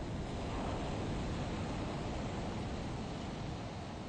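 Steady, even rushing noise like distant surf or wind, with no distinct sounds standing out.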